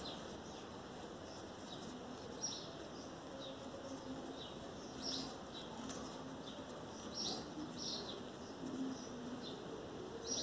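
Small birds chirping in short, scattered high calls, with a dove cooing faintly and low between them.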